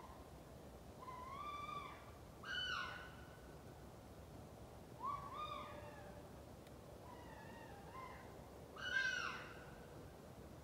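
Unidentified wild animal screaming in the woods, recorded on a cell phone: five wavering, high-pitched cries that bend up and down, the loudest near the end. The cries sound almost like a cat and like a screaming woman.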